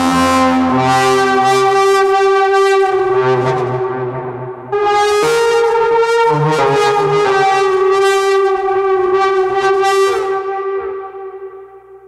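Instrumental music: two long sustained chords. The first fades about four seconds in; the second strikes at about five seconds and dies away near the end.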